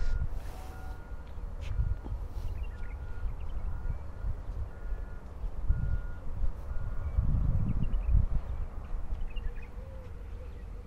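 A faint short beep repeating about once a second over a low, uneven rumble, with the rumble swelling around the middle and again near the end.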